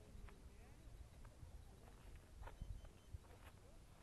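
Near silence on an open field: a faint, uneven low rumble of wind on the microphone, with a few faint distant voices.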